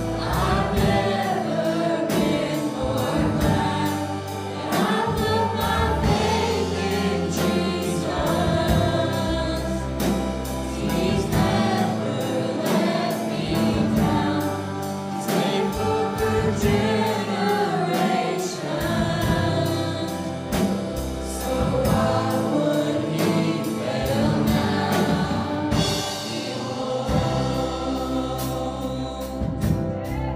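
A mixed youth choir singing a gospel worship song into microphones, over a full accompaniment with a steady beat.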